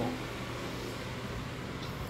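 Steady room noise: an even hiss with a faint low hum, and no distinct events.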